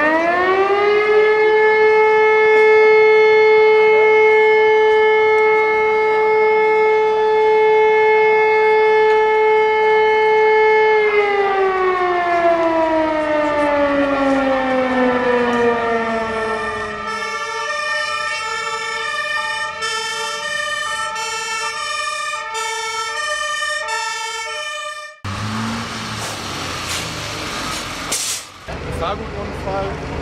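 An alarm siren winds up to a steady wail, holds it for about ten seconds, then winds down in a long falling glide. Then a fire engine's two-tone horn sounds its alternating high and low notes for about eight seconds and is cut off suddenly.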